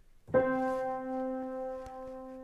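A single middle C struck once on a piano about a third of a second in, ringing on and slowly fading. Its long ring comes from the piano's other strings vibrating in sympathy with the note.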